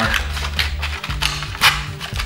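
Background music with a steady bass line, over sharp clicks and creaks of foam board being flexed open by hand. The loudest click comes near the end.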